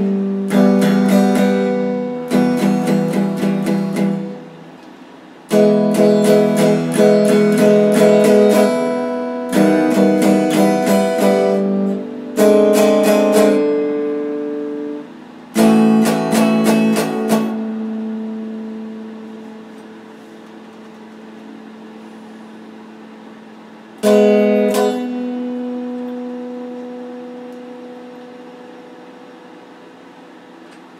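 Electric guitar played in short bursts of strummed chords with brief pauses between them. About halfway through a chord is left to ring and slowly fade, and another struck later on rings out the same way.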